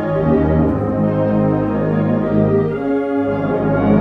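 Concert band playing a slow passage of held chords, brass to the fore; the chord changes about three seconds in.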